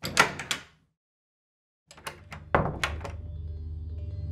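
A door being knocked on and opened: three quick sharp knocks, then after a short silence a run of clicks and thuds as the door opens. Low, steady background music comes in under it near the end.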